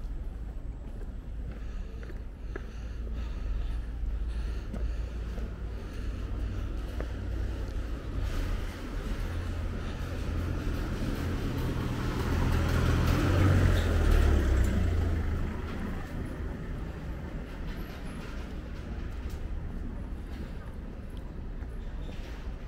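A bus passes on the street: its engine and tyres swell in, peak a little past halfway and fade away, over a steady low street hum.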